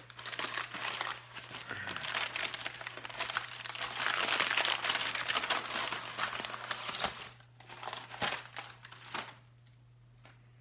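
Paper wrapping crinkling and crumpling as it is handled and pulled off a new carburettor. The rustling goes on steadily, is loudest in the middle, and breaks into a few short crackles near the end.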